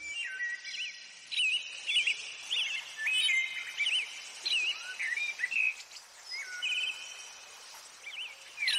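Birdsong: several birds chirping and whistling in short, quick phrases with rising and falling notes, over a faint steady background hiss.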